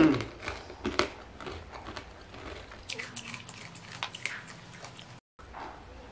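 Close-up chewing and mouth sounds of a man eating rice and side dishes by hand, with scattered small crunchy clicks. A short hummed "hmm" falls at the very start.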